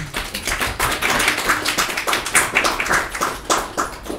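Audience applauding at the end of a talk, a dense patter of claps that thins out near the end.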